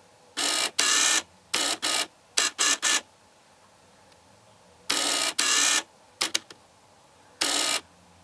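Camera lens autofocus motor whirring in about a dozen short bursts, clustered in the first three seconds, again around the middle and once near the end: the lens hunting back and forth for focus on a subject held very close.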